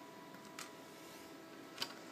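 Mostly quiet, with a faint steady hum. A small tick about half a second in and a sharper click near the end come from a hand working a DVD disc in a steelbook's clear plastic disc tray.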